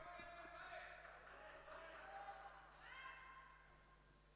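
Near silence: faint, distant voices carrying through a sports hall, with a low, steady hum underneath.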